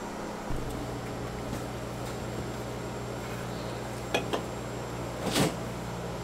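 A kitchen appliance's motor starts humming steadily about half a second in. Two light clicks come about four seconds in, and a sharper knock near the end.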